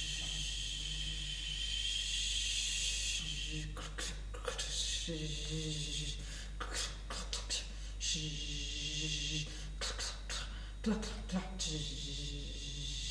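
Performers making mouth noises in place of words: a long hiss, then a run of quick tongue clicks with short buzzing, voiced hisses about five and eight seconds in, and another hiss near the end.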